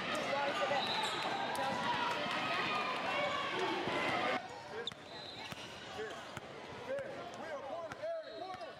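Busy indoor basketball gym: many overlapping voices with basketballs bouncing on a hardwood court. About four seconds in the sound cuts suddenly to a quieter stretch of court noise with scattered ball bounces and distant voices.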